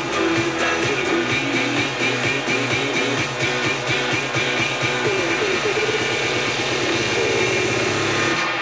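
Music playing on an FM radio broadcast, dense and rhythmic with a steady beat.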